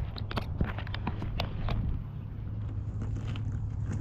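Handling noise from a plastic water-cooler dispenser being touched and moved: a quick run of light clicks and taps in the first two seconds, then only scattered small taps, over a steady low rumble.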